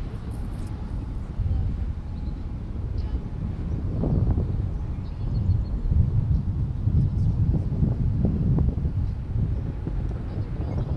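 Wind buffeting the microphone: a gusty low rumble with no clear tone, growing stronger from about four seconds in.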